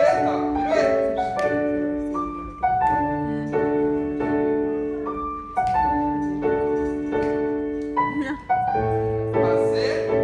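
Piano music accompanying ballet barre exercises: chords struck and left to ring, changing about once a second, in short phrases.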